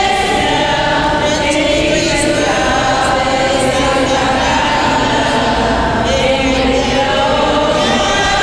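A church choir, mostly women's voices, singing a hymn together in long, held notes.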